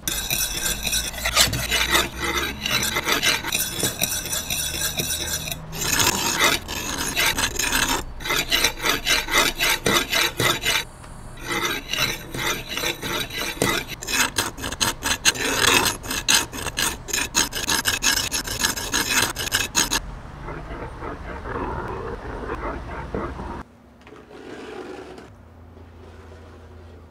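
Blue paper shop towel rubbing on wet car window glass in rapid back-and-forth strokes, with brief pauses. The rubbing is softer for a few seconds near the end, then stops suddenly.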